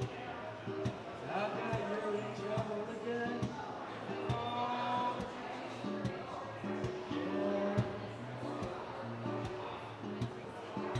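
Acoustic guitar strummed in a steady rhythm with sharp percussive strokes, with a man singing over it.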